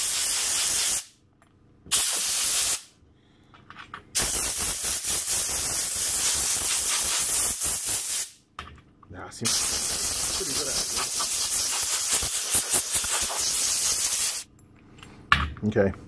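Compressed-air blow gun blasting through a pleated paper air filter element to blow the dust out, in four bursts of hiss: two short ones, then two long ones of about four and five seconds.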